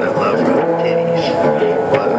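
Electric guitar played through an amplifier: a run of held notes that move to a new pitch every half second or so.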